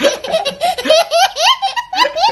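A toddler laughing hard in quick, repeated peals, climbing into higher-pitched squeals past the middle.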